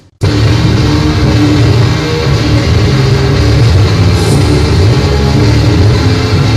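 Grindcore/noisecore music: right at the start a brief silent gap between tracks, then the next track starts abruptly at full volume, dense and loud.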